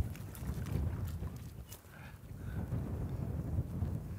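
Wind rumbling on the microphone, with a few faint sloshes of water around a horse standing belly-deep.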